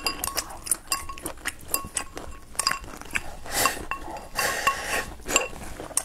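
Chopsticks clicking and scraping against a ceramic rice bowl as rice is shoveled into the mouth, a quick run of clinks, some ringing briefly, with eating noises in between.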